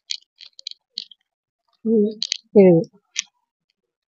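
Light clicks and crackles of clear plastic saree covers being handled, with a couple of short spoken syllables about two seconds in.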